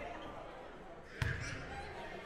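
A single sharp thump about a second in, echoing through a large gymnasium, over faint background voices.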